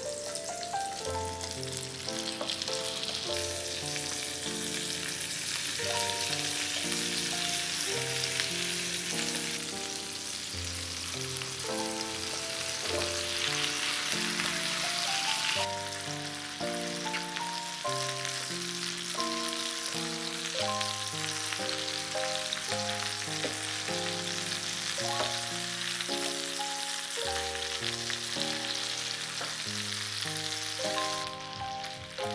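Chicken drumsticks frying in oil in a pan, a continuous sizzle that shifts in level near the middle, under background music of held melodic notes.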